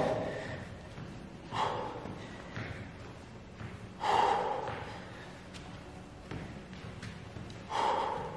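A man breathing hard while doing fast cross-body mountain climbers, with three loud, forceful breaths: about a second and a half in, at four seconds, and near the end.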